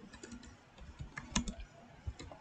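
Typing on a computer keyboard: an uneven run of light key clicks, with the sharpest keystroke about one and a half seconds in.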